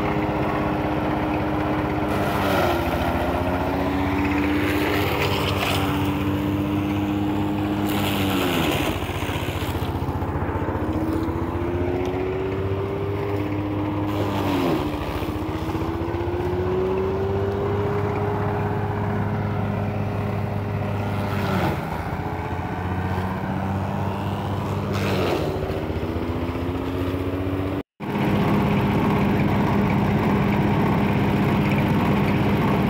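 Engine-driven forage chopper running while corn stalks are fed through it. Its pitch drops sharply about five times as the engine is loaded by the stalks, then climbs slowly back each time. The sound cuts out briefly near the end.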